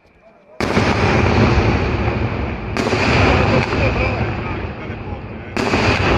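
Aerial fireworks display starting: about half a second in, a sudden loud burst opens into continuous booming and crackling of bursting shells, with fresh loud bursts near three seconds and again near the end.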